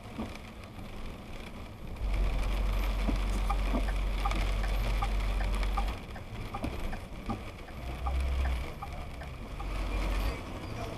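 Road noise inside a car driving on a wet road in the rain: a steady hiss with a heavy deep rumble from about two to six seconds in and again briefly near eight seconds, and scattered light ticks throughout.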